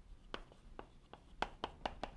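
Chalk writing on a blackboard: about six faint, short taps and scratches at an uneven pace as a word is chalked out.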